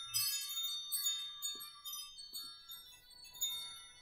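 Tinkling chimes: high bell-like notes struck one after another, each ringing on, with the whole fading away.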